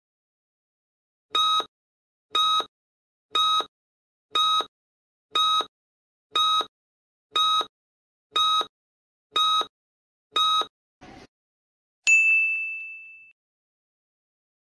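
Countdown timer sound effect: ten short, identical beeps, one a second, followed by a brief faint rustle and a single ding that rings out and fades over about a second as time runs out and the answer is shown.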